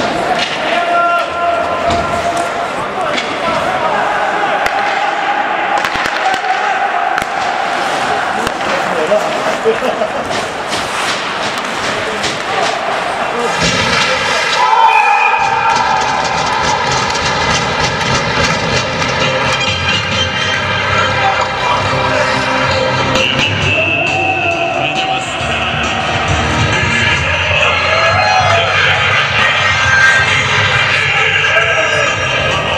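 Ice rink noise after a goal in an amateur hockey game: shouting voices and sharp clatter on the ice. Music starts about halfway through and carries on to the end.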